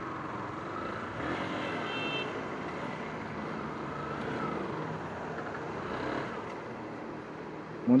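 Yamaha R15 single-cylinder motorcycle engine running at low speed under steady road and wind noise as the bike slows and turns off the street, with a short faint beep about two seconds in.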